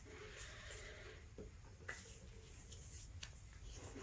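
Near silence: faint room tone with a few soft rustles and clicks.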